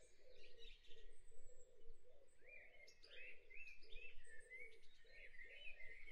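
Faint bird chirps, short rising calls repeated at irregular intervals.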